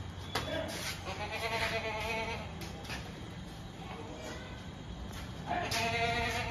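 Goat bleating: a short call just after the start, a long wavering bleat from about one to two seconds in, and another bleat beginning near the end.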